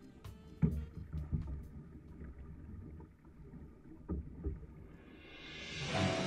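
Outrigger canoe underway: low rumble of water and wind with a few paddle-stroke thumps. Music fades out at the start, and a new song fades in near the end.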